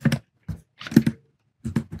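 Computer keyboard typing: a few scattered keystrokes, with a short burst of key presses about a second in and another near the end.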